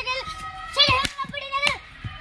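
A child's voice, speaking out loudly in short, rising and falling phrases.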